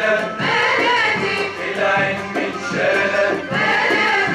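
A male choir singing an Egyptian song in unison phrases, accompanied by an Arabic music ensemble of qanun, oud and bowed strings.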